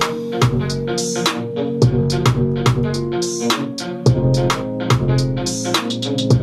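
An afro trap/reggae-style beat playing back: a plucked electric guitar over programmed drums and a bass line, with the bass coming in fuller about four seconds in.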